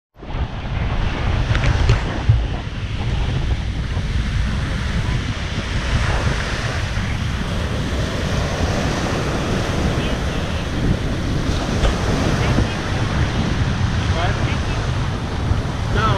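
Small waves breaking and washing up a sandy beach, a steady surf noise, with wind buffeting the action camera's microphone and adding a heavy low rumble.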